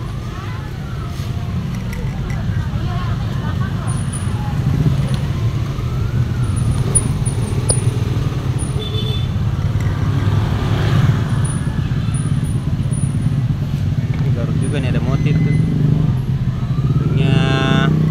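Road traffic: a steady low engine rumble of passing and running vehicles.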